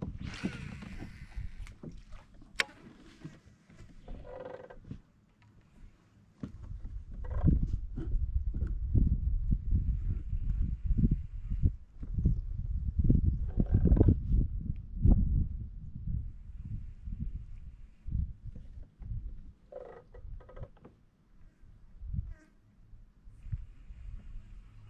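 Handling noise on a plastic fishing kayak while a lure is fished: uneven low rumbling with many short knocks, loudest in the middle, after a brief hiss in the first two seconds.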